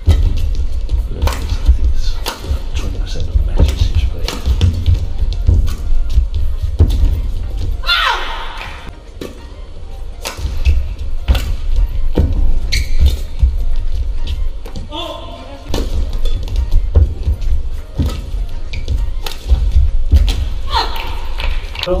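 Badminton rally: rackets striking the shuttlecock in sharp repeated cracks, with a few shoe squeaks on the court, over background music with a heavy low pulse.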